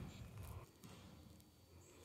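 Near silence: faint outdoor background with no chainsaw or other clear sound.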